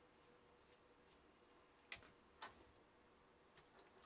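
Very faint brush strokes sweeping metal swarf off a milling machine vise, then two light clicks about two seconds in, half a second apart, and a few faint ticks near the end.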